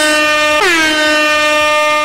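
Loud air-horn blast, a steady brassy tone that is already sounding, briefly breaks and re-sounds a little over half a second in, then holds and cuts off.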